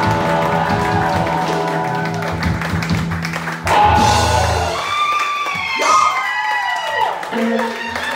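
Live band with electric guitar, bass guitar and drums playing loudly; about five seconds in the bass and drums drop away, leaving long, gliding high notes over a thinner background.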